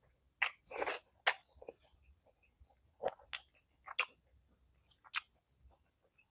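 Close-miked eating sounds of a person eating fried boiled eggs with his fingers: a series of short, sharp mouth smacks and chewing clicks, irregularly spaced, several in the first second and more around three to five seconds in.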